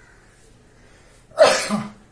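A man coughs once, loudly and briefly, about a second and a half in.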